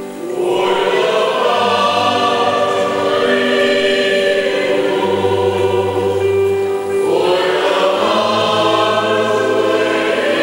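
Mixed choir of men and women singing in sustained chords, starting a new phrase just after the start and another about seven seconds in.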